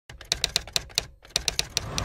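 Keyboard-style typing clicks: about ten sharp clicks in two seconds at an uneven pace, with a short break just after the first second.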